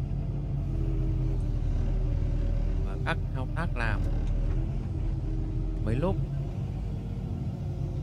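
Diesel engine of a crawler excavator running steadily with a low, even drone.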